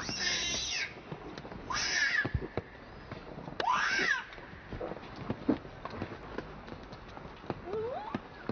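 Infant macaque screaming: three loud, high-pitched cries, each under a second, with a fainter cry near the end and short ticks in between.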